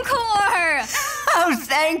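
Animated characters' voices making drawn-out wordless sounds: one voice slides down in pitch in the first second, then wavering pitched vocalizing follows, just as the song's music ends.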